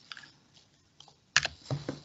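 A few sparse clicks from a computer keyboard and mouse, with one sharp click about a second and a half in standing out from faint ticks.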